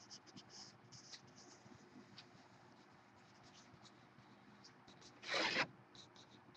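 Faint scratchy rustling of a handled paper sheet, with one louder, half-second rustle about five seconds in.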